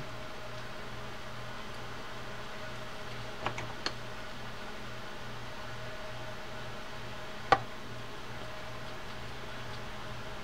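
Steady low background hum with a few small clicks from a screwdriver and metal reel parts as the handle nut-cap retaining screw is driven in: two faint clicks around four seconds in and a sharper one a few seconds later.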